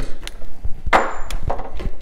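Irregular knocks and clatter of wood and tools being handled, with one louder knock about a second in.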